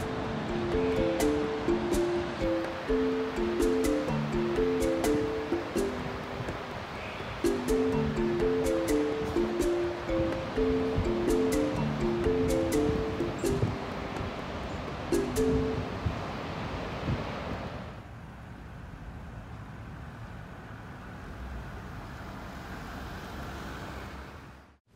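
Steady rushing roar of a waterfall heard from afar, with a light melody of short notes from background music over it. The melody stops a few seconds before the end, and the roar then drops to a softer hiss.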